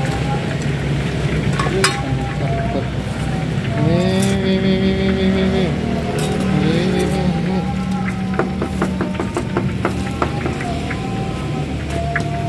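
Metal tongs clicking against a perforated tray of fried fritters, a quick run of clicks about two-thirds of the way through, over a steady low hum and a pitched voice or music in the background.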